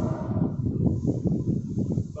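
Uneven low rumble of wind noise buffeting the microphone.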